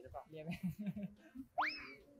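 Soft speech, then about a second and a half in a short comedic sound effect: a whistle-like tone that sweeps quickly up in pitch and eases slightly back down.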